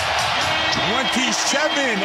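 Arena crowd noise in a basketball arena just after a made three-pointer, with a raised voice rising and falling over it and a steady held tone entering about a quarter of the way in.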